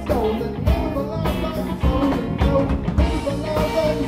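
Live rock band playing: two electric guitars, electric bass and a drum kit, with a melody line bending in pitch over a steady drum beat.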